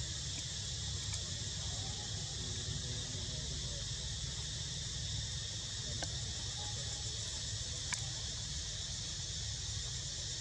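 Steady high-pitched insect chorus, with a steady low rumble underneath and a few faint clicks.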